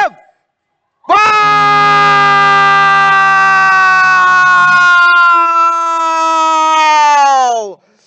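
Football commentator's long, drawn-out goal shout: one held call of about six and a half seconds at the moment the ball hits the net. Its pitch sinks slowly and drops away at the end.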